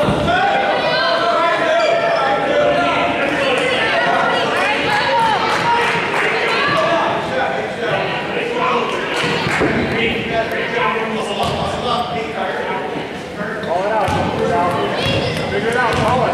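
Basketball being bounced on a hardwood gym floor, mixed with overlapping voices of players and spectators, all echoing in a large gymnasium.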